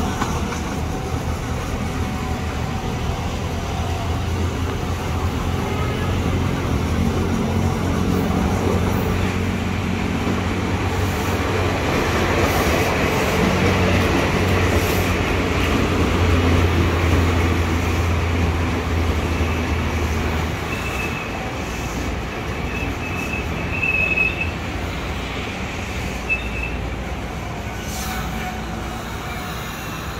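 Electric commuter train pulling into the platform and braking: a steady low motor hum and wheel rumble builds through the middle and falls away about twenty seconds in. Several short high-pitched squeals follow as it comes to a stand.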